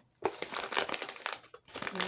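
Packaging crinkling and crumpling as it is handled and pulled open. The crackling starts about a quarter second in and runs on with a brief lull near the end.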